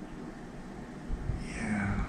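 Quiet room tone with a low rumble. Near the end comes a faint voiced sound, like a soft hum or breath, with a few soft low bumps.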